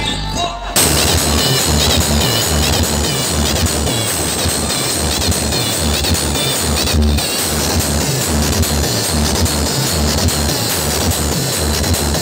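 Electronic dance music with a heavy bass beat, played very loud through a street DJ rig's stacked loudspeakers. After a brief sparser bass-only moment, the full track kicks in about a second in.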